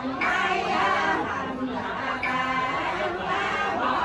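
Several voices reciting funeral prayers together in a continuous chanted cadence, some syllables held on a steady pitch.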